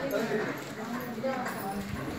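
Quiet, indistinct talking, with a few faint clicks.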